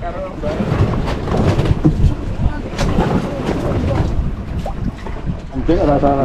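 Wind buffeting the microphone over the wash of the sea around a wooden fishing boat. A man's voice comes in briefly near the end.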